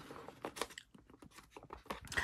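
Faint, scattered clicks and light rustles of paper-wrapped Cray-Pas oil pastel sticks being handled and pushed back into their cardboard tray.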